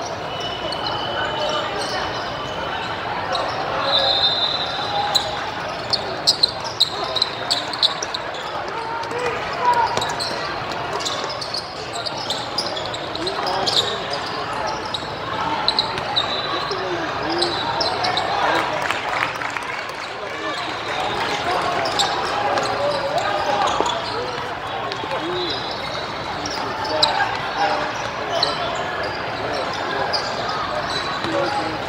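Indoor basketball game sounds echoing in a large gym: a basketball dribbling and bouncing on the court, with short high sneaker squeaks and a steady background of players' and spectators' voices.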